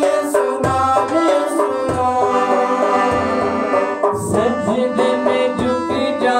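Devotional song with harmonium chords, hand-drum strokes and singing. The drum stops for about two seconds in the middle while a chord is held, then comes back in.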